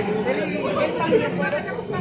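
Indistinct chatter: several people talking at once at an open-air street market.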